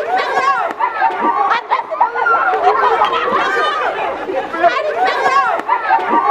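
Several people's voices shouting and chattering over one another, loud and continuous, with no single clear speaker.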